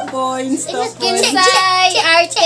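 A high voice singing a short phrase with long held notes, the longest near the end.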